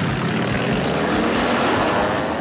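Cartoon sound effect of motorcycle engines and an off-road vehicle driving at full speed, a loud, steady run of engine noise.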